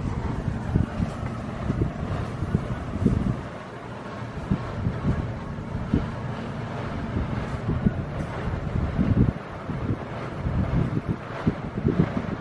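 Wind noise on the microphone: an uneven low rumble and buffeting, rising and falling, from a strong air-conditioning draft blowing down from overhead.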